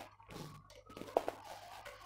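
Faint clicks and handling noise of a screwdriver working at a portable generator's carbon brush holder as the brush is taken out. There is a few small clicks a little past one second in, over a faint low hum.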